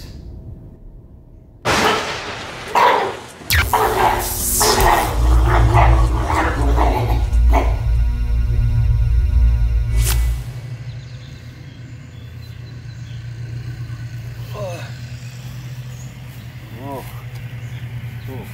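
Storm sound effect: sudden cracks of thunder followed by deep, loud rumbling and an electric buzz, which cut off abruptly about ten seconds in, leaving a quieter background.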